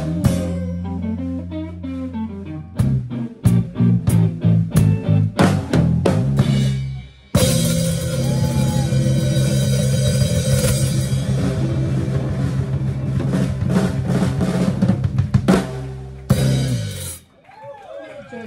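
Live soul band with drum kit playing the end of a song: a bass riff, then a run of sharp hits on the kit, a brief stop about seven seconds in, then a long held final chord under a cymbal wash. A few last hits close it, and it cuts off about a second before the end.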